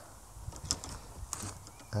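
A few faint clicks and rattles of golf clubs knocking together in a golf bag as a driver is drawn out.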